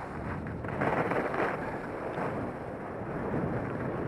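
Telemark skis sliding and carving through fresh snow, a steady hiss that swells louder about a second in, mixed with wind buffeting the body-worn camera's microphone.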